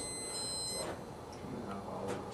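Multimeter continuity buzz, a steady high-pitched tone from the meter probes across a fuse, cutting off about a second in. The buzz means the fuse has continuity and is good.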